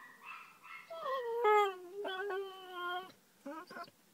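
Basset hound crying: a long whine begins about a second in, falls in pitch and then holds steady, followed by two short whimpers near the end.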